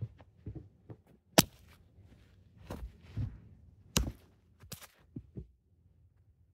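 Irregular thumps and taps from a cat pouncing and batting at a feather wand toy right over the phone, its paws knocking against the floor and the phone. The sharpest taps come about a second and a half in and again around four seconds.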